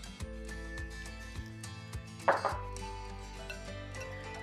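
Soft background music with sustained notes, under faint knocks and rustling of hands working crumbly oat dough in a glass bowl, with one brief louder rustle a little after two seconds in.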